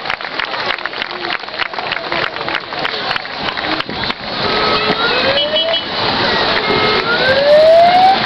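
Crowd clapping, then about halfway a fire engine's siren sounds, twice winding upward in pitch over about a second.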